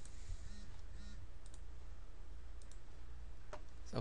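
A few faint, separate clicks of a computer mouse and keyboard being worked, over a steady low hum.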